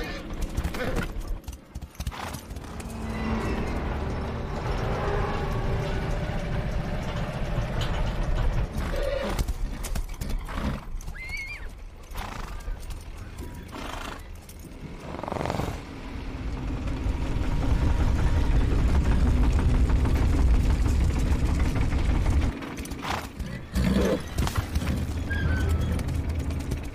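A horse neighing and its hooves clip-clopping, over film music and a heavy low rumble that swells louder in the second half.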